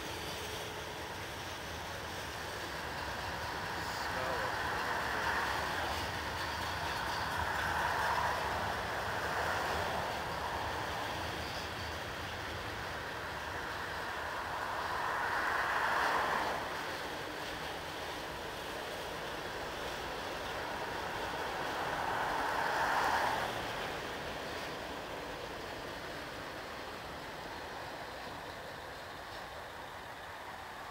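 Freight train cars rolling across a bridge with a steady low rumble. Highway cars pass underneath four times, each a swelling and fading rush of tyre noise.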